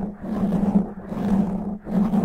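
Fingernails scratching fast and rough across a foam microphone windscreen, right on the mic: a dense, low scratching in strokes broken by short pauses about once a second.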